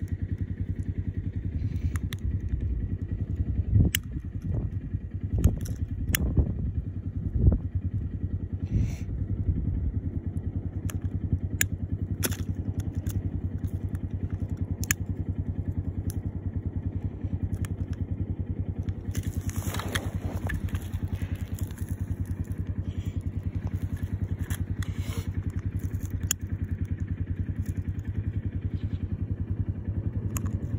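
An engine idling steadily, a low even hum, with scattered clicks, knocks and crunches over it and a short burst of hissing noise about two-thirds of the way in.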